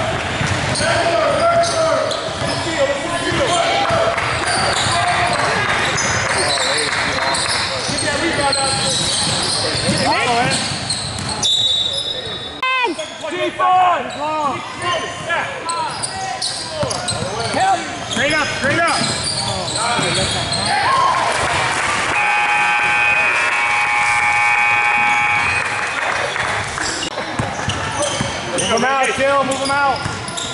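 Basketball game in a large gym: a ball bouncing on the hardwood floor and sneakers squeaking, under the voices of players and spectators echoing in the hall. A steady pitched tone sounds for about four seconds past the middle.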